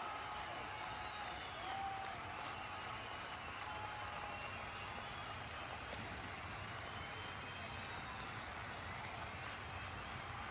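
Steady low background noise, an even hiss-like hubbub with faint indistinct voices wavering behind it.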